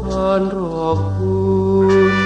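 Male vocalist singing a Thai luk krung ballad over an orchestral accompaniment. The sung phrase glides downward and ends about a second in, leaving steady held notes from the band.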